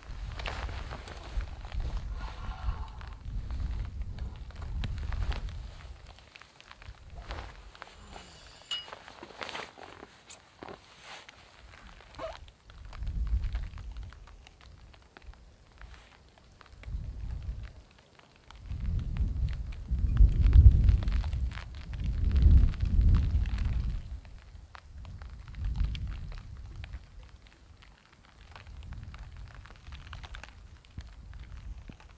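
Gusts of wind buffeting the microphone: a low rumble that swells and dies away again and again, strongest about two-thirds of the way through, with a few small clicks and taps over it.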